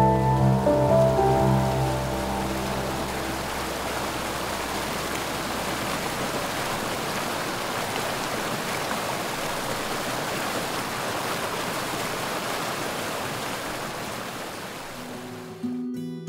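A rocky stream rushing and splashing over stones, a steady rush of water that fades out near the end.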